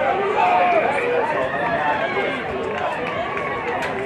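Several voices shouting and calling over one another from onlookers at a rugby sevens match, a busy, overlapping hubbub with no single clear speaker.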